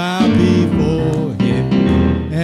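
Gospel praise song: voices singing into microphones over keyboard accompaniment, a new phrase starting right at the beginning.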